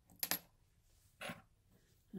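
A light metallic clink about a quarter second in, with a brief high ring, then a softer, duller click about a second later: small metal hand tools, a pick or tweezers, being set down and picked up on a hard countertop.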